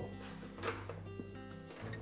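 Quiet background music with held notes, and a faint click about half a second in.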